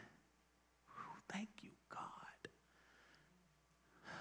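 Faint whispered speech, a few quiet murmured syllables in an otherwise near-silent room, with one sharp click about two and a half seconds in.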